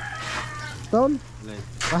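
A rooster crowing, one long held call that ends a little under a second in, under men's talk.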